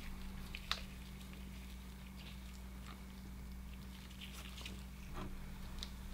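Quiet room with a steady low hum and a few faint small clicks and handling noises. The last ones come near the end, as the sand-filled metal bowl is picked up by gloved hands.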